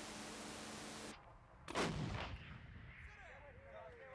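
Steady hiss that cuts off abruptly about a second in. It is followed by a single loud gun blast with a short echoing tail, and a fainter sharp crack near the end.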